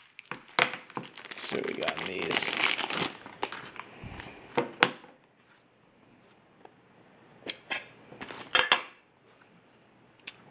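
Plastic packaging crinkling and rustling as trading cards in plastic sleeves and holders are handled and unwrapped, dense for about the first five seconds. After a quiet stretch come a few short crinkles and clicks near the end.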